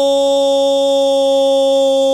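A radio football commentator's long, drawn-out 'gooool' goal cry, held loud on one steady note.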